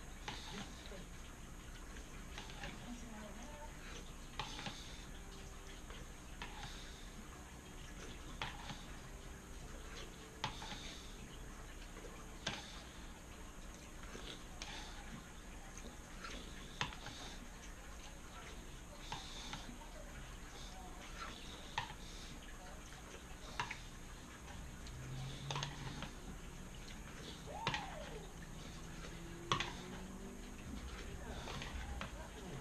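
Spoon clinking against a cereal bowl about every two seconds as someone eats cereal with milk, over a steady low hum.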